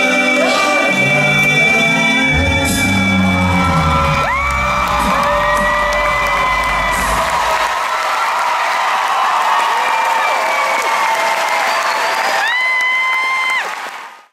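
An a cappella vocal group holding a final chord over a deep bass voice, which ends about halfway through, while the audience cheers, whoops and applauds until the sound fades out at the end.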